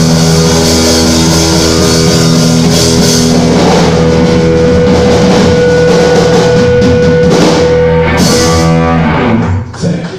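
Live heavy-metal band with distorted electric guitars and drum kit playing the final bars of a song, with long held chords. The music cuts off about nine and a half seconds in as the song ends.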